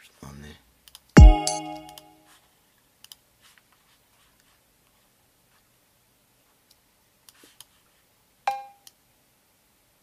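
Drum sounds from Logic Pro's Ultrabeat drum machine auditioned one at a time. About a second in comes one loud hit with a deep low thump and ringing tones, and near the end one short cowbell hit. A few mouse clicks fall in between.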